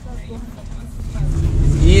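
A car engine running close by, a low rumble that swells louder about a second in.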